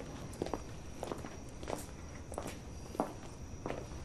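Footsteps of people walking at an unhurried pace, a step about every half to two-thirds of a second.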